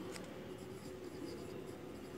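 Pencil writing on notebook paper: a faint scratching of the graphite as the letters are formed.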